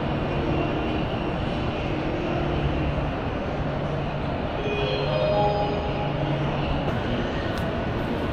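Steady rumbling hum of a large underground metro station hall, with soft held notes of background music over it.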